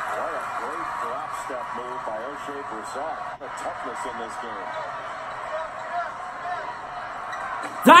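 Basketball game TV broadcast audio: steady arena crowd noise with a commentator's voice faint underneath. Right at the end, a man breaks in with a sudden loud shout.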